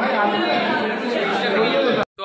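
Crowd chatter: many young men talking over one another at once, loud and continuous, in a large room.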